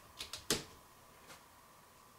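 A DC miniature circuit breaker (trip switch) being flipped on by hand: a couple of small clicks, then one sharp snap about half a second in as the breaker latches, connecting the battery bank to the solar charge controller.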